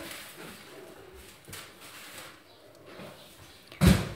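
Quiet room tone with faint, indistinct background sound, then a short loud bump near the end.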